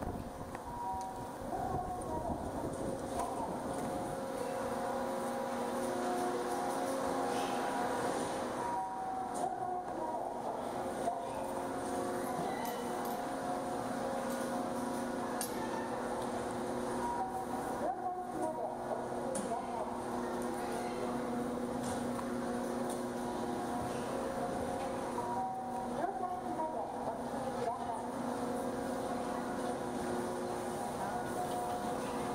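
Chairlift station machinery running: the drive and bullwheel make a steady mechanical hum with several whining tones over it. It gets louder in the first couple of seconds, as the listener comes in under the station roof.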